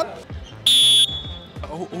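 A referee's whistle blown once: a single short, high-pitched blast of under half a second, about two thirds of a second in, the loudest sound here.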